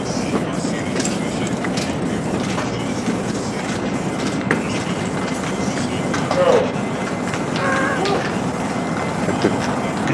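Steady rumbling noise of a moving vehicle, with faint voices now and then.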